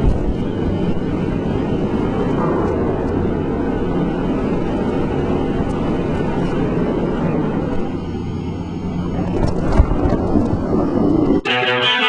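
Ski-lift gondola cabin running through the lift station: a steady low rumble of the lift machinery with a few clicks and clanks. Near the end it cuts off suddenly and guitar music starts.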